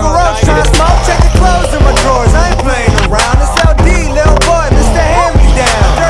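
Hip-hop music track with a heavy bass line and steady drum hits.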